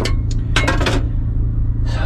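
Plastic items rustling and clicking as they are handled at a kitchen sink, with a short burst of noise about half a second in, over a steady low hum.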